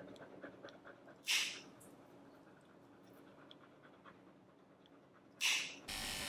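Faint dog breathing: a short breathy huff about a second in and another near the end, with a few faint ticks between.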